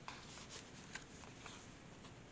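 Faint rustling of paper and card pages being handled in a handmade journal, with a few light, scattered ticks.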